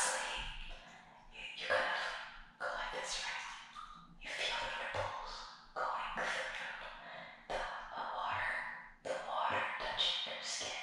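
A woman whispering in short phrases with brief pauses between them.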